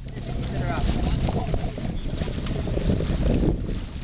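Wind buffeting the microphone over the wash of water from a moving boat, with a short snatch of voice under a second in.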